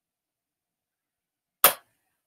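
A single sharp click about one and a half seconds in, loud and very brief, in otherwise near-silent room tone.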